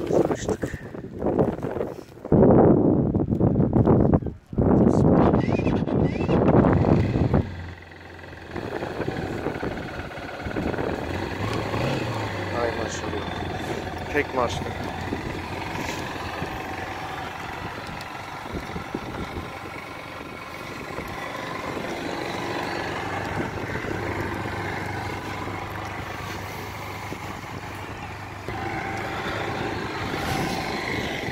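Honda CBF 150's single-cylinder four-stroke engine on a cold start in the snow: several seconds of loud cranking with one short break, then it catches and settles into a steady idle, with a brief small rise in revs a few seconds after catching.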